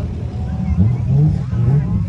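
Car engines running and revving as cars are driven through soft desert sand, the engine pitch rising and falling about halfway through.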